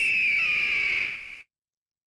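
A person's loud, breathy, high-pitched screech that sags slightly in pitch, following a held sung note and cutting off about a second and a half in, followed by dead silence.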